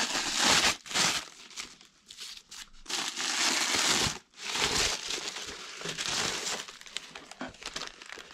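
Tissue-paper wrapping crinkling and rustling as it is pulled off rolled paper prints by hand, in several long bursts with short pauses between.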